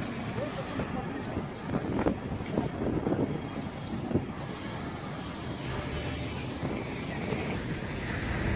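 A car engine running under outdoor street noise, with wind on the microphone. People talk in the first few seconds, and there are a couple of short knocks.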